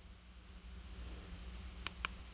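Faint steady low hum with a sharp click near the end: a thumb pressing a button on a handheld OBD-II code scanner.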